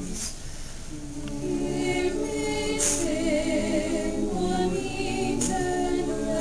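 Small mixed-voice high school choir singing Christmas music a cappella in harmony, with sustained held notes; the voices are softer in the first second and then swell again.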